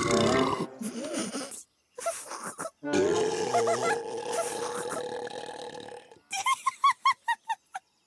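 Cartoon cow burping into the tank strapped over its mouth: a rough burp at the start, a short one, then a long burp of about three seconds. Short voice sounds follow near the end.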